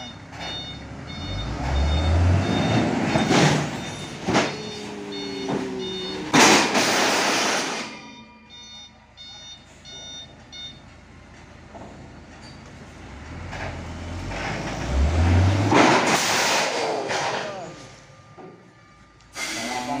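A truck engine revving up twice as the truck works out from under its load of 12-metre IWF steel beams, with loud crashing and scraping of the heavy steel beams sliding off the bed and striking the ground: the longest crash about six seconds in, another about sixteen seconds in. A repeating electronic beep sounds in the first couple of seconds.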